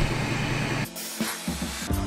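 A steady outdoor hiss with a low hum for under a second, then background music with drum hits and bass cuts in.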